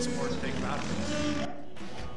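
A man's voice, drawn out and carried through a room's speakers, with track noise from the played video behind it. It cuts off in a brief drop-out about one and a half seconds in.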